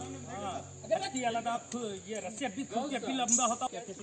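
Men's voices talking indistinctly, several at once, over a steady high insect drone of crickets or cicadas.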